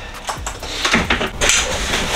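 A few sharp clicks and clinks of small hard objects being handled, with a brief rustle about three quarters of the way in.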